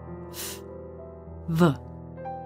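Soft background keyboard music holding steady chords, over which a voice sounds out isolated consonants for a pronunciation drill: a breathy unvoiced /f/ about half a second in, then a short buzzing voiced /v/ with falling pitch about a second and a half in.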